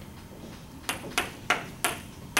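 Four sharp taps of a dry-erase marker against a whiteboard, about a third of a second apart, starting about a second in.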